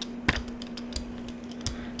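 Brayer rolling paint across a Gelli gel printing plate, giving a tacky crackle with a few sharp scattered clicks, over a steady low hum.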